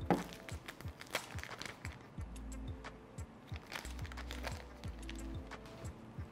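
Protective plastic film being peeled off a new smartphone, with scattered crackles and clicks. Background music with a steady beat plays under it.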